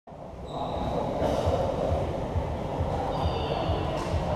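Steady rumbling din of a volleyball game in a large open-sided sports hall, with low irregular thumps, and thin high squeaks about half a second in and again near the end.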